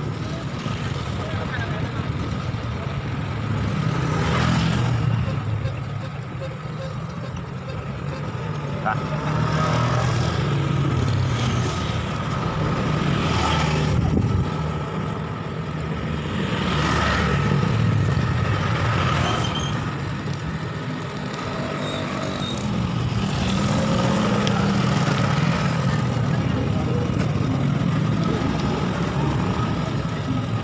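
Wind rushing over the microphone of a camera on a moving bicycle, a low rumble that rises and falls, with road traffic and motorbikes passing now and then.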